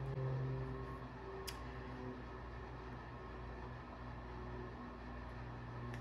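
Quiet room tone with a steady low hum, and a single faint click about one and a half seconds in.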